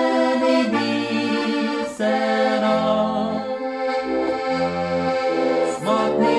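Button accordion playing a folk tune, its sustained chords over bass notes that change about every second, with a man and a woman singing along in duet.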